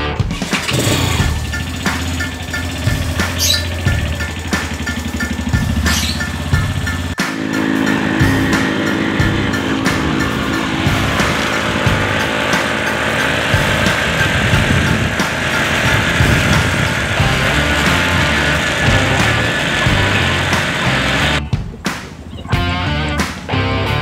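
Motorcycle engine running as it is ridden, with background rock music. The sound changes abruptly about seven seconds in, then runs steadily.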